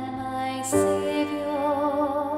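Grand piano playing slow hymn chords, changing chord about three-quarters of a second in, as a woman's alto voice holds a long note with vibrato over it.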